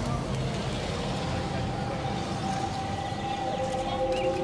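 Steady city background of distant traffic, a continuous low rumble and hiss. A single held tone comes in about a second and a half in and stays level.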